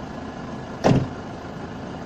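A car door slamming shut with a single short, loud thump about a second in, over a steady low rumble in the car's cabin.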